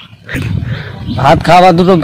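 A man speaking, his words starting a little over a second in, preceded by a short low rumbling noise.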